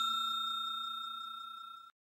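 A bell-like chime sound effect ringing out after being struck, holding its pitch while it fades steadily, then cutting off suddenly near the end.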